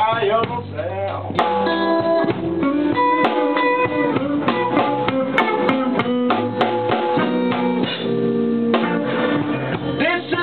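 Live electric blues band playing: electric guitar picking single-note lines over bass and drum kit, with a sung line trailing off about a second in.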